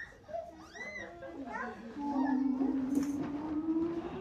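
A woman's voice sliding up in a high vocal glide, then holding one long sung tone that slowly rises toward the end, as a play parachute is lifted. A short hiss about three seconds in.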